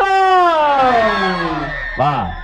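A man's voice drawing out one long syllable, its pitch falling steadily over nearly two seconds.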